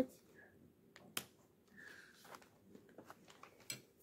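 Scissors snipping the thin plastic ties that hold a Barbie doll in its packaging: a few faint, scattered clicks, the sharpest about a second in, with more near the end.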